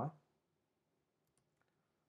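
The end of a spoken word, then a few faint computer keyboard key clicks about a second in, as a short terminal command is typed and entered.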